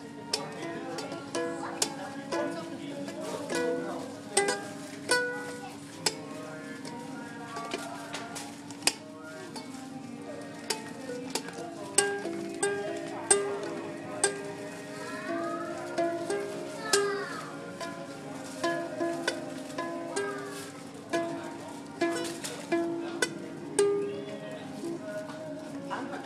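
Ukulele played by hand: a run of plucked notes and strummed chords, each with a sharp attack.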